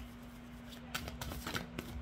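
A tarot deck being shuffled by hand: a run of short, quick card snaps and flicks in the second half.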